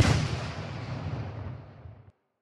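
A sudden loud blast sound effect, like an artillery shot, with a deep rumbling tail that fades over about two seconds and then cuts off abruptly.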